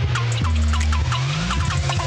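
Darksynth electronic music: a heavy sustained bass with short downward-gliding synth notes, and a rising synth sweep that starts about a second in.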